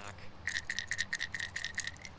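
Heddon Super Spook topwater walking lure shaken by hand, its internal rattle knocking in a quick run of about nine clicks, each with a short ring. A deep knock, a low rattle for a walking bait.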